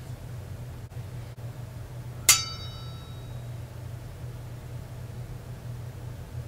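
A single clear clink of a hard object, ringing for about a second, over a low steady hum.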